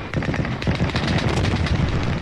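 Battle sounds: rapid gunfire in quick succession over a heavy low rumble.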